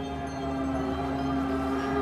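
Background music of slow, sustained held chords with no beat.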